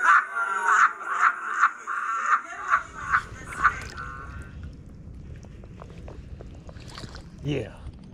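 A pulsing, voice-like intro sound sting over the channel logo, about two or three pulses a second, lasting about four seconds. After it, a low outdoor rumble with faint clicks, and a short gliding sound near the end.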